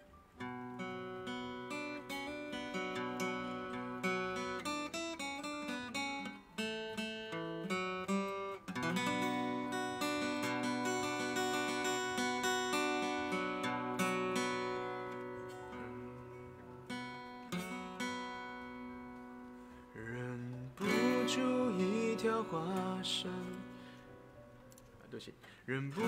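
Steel-string acoustic guitar playing a song's instrumental introduction, a run of picked and strummed chords with melody notes, starting just after the beginning and dipping briefly near the end.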